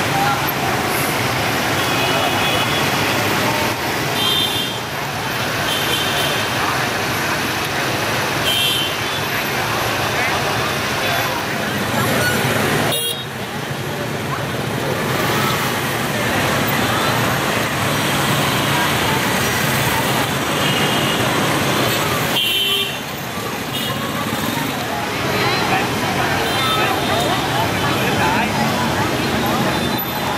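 Dense motorbike and scooter traffic crawling through a crowded street: many small engines running together, with short horn beeps several times and people's voices in the crowd.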